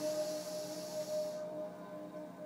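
A long audible breath drawn in, a soft hiss that stops about a second and a half in. Under it, quiet background music holds one steady tone.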